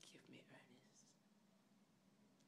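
Faint whispering for about the first half-second, then near silence with a low steady hum.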